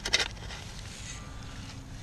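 A metal shovel blade scraping and crunching into dirt and dry grass in a short burst of crackles right at the start, then low steady wind rumble on the microphone.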